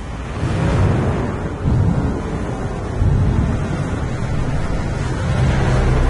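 Intro of an AI-generated (Suno) song: a low, rumbling wash of noise like surf or thunder swells up out of silence in the first second and holds steady, with pitched instruments coming in at the very end.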